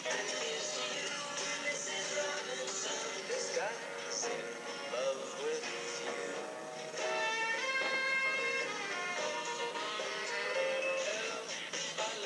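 Snippets of number-one pop hits playing, switching to a different song about seven seconds in.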